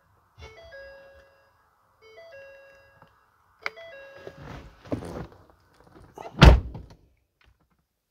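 Ford F-350 dashboard warning chime sounding twice, about two seconds apart, each a short falling two-note tone, as the ignition is switched on. A few clicks and rustling follow, then a single heavy thunk near the end, the loudest sound.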